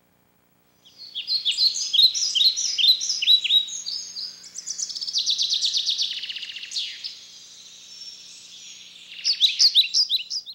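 Songbirds chirping and singing, starting about a second in: quick falling chirps, then a fast run of repeated notes midway, then fainter calls that pick up again near the end.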